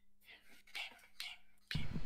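Faint whispered voices, then a sudden louder sound with a heavy low end near the end.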